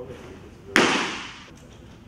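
A pitched baseball smacking into the catcher's mitt: one sharp pop about three-quarters of a second in, with a short echo trailing off after it.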